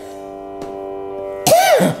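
Steady Carnatic shruti drone, a sustained chord of a few fixed pitches, with a woman's voice cutting in near the end with one short sung note that rises and falls in pitch.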